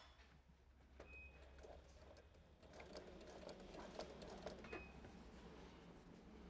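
Faint, slow running of a Sailrite Ultrafeed walking-foot sewing machine top-stitching vinyl, with a low hum and light ticks, a little louder from about halfway in.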